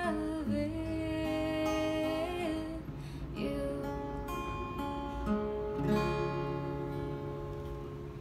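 A woman sings a long held note, with vibrato near its end, over a steel-string acoustic guitar. Then the guitar strums two ringing chords that fade away as the song closes.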